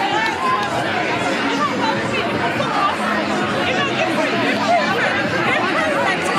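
A crowd of many voices shouting and talking over one another, with no single speaker standing out.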